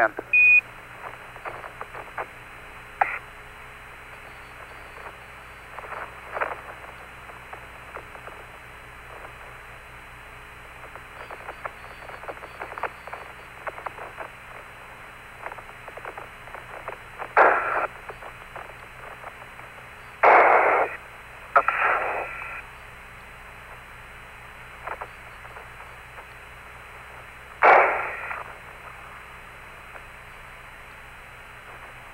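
Apollo lunar-surface radio link: a steady hiss with a low hum, opened by a short high Quindar beep right at the start. Several brief louder bursts of noise come through the open channel later on, two around the middle and one near the end, but no words.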